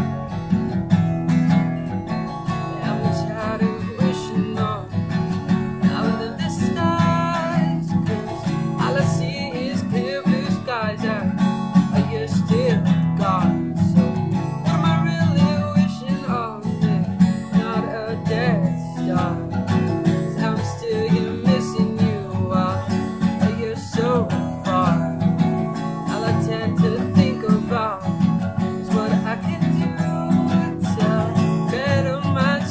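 Acoustic guitar playing a folk-rock song, with a man singing over it from several seconds in.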